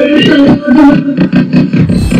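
TV newscast opening theme music, played loud, with pitched low notes that break up every fraction of a second.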